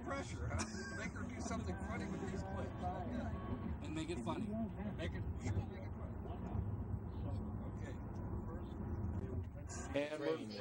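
Steady low rumble of a car driving, heard inside the cabin, under indistinct voices in the back seat.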